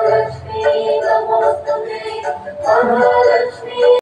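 A devotional song: a singing voice holding long notes in phrases over musical accompaniment.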